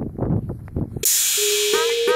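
Footsteps and camera-handling noise while walking on a road for about a second, then a sudden loud hiss cuts in as background music starts: a held electronic tone with quick rising sweeps.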